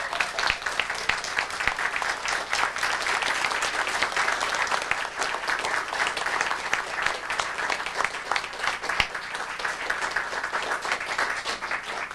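An audience applauding steadily, dying away right at the end.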